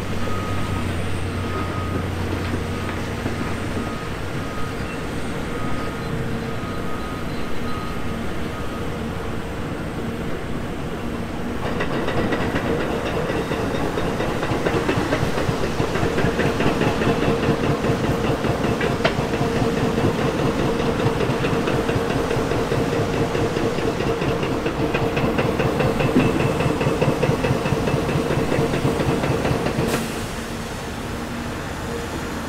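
Diesel engines of excavators and dump trucks running at a construction dig, with a backup alarm beeping steadily for the first several seconds. About twelve seconds in, the machinery gets louder and busier and stays that way.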